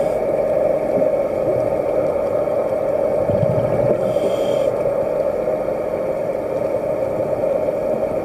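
Underwater recording: a steady motor-like hum carried through the water, with one scuba breath about halfway through, a low bubbling rumble of the exhale followed by the short hiss of the regulator on the inhale.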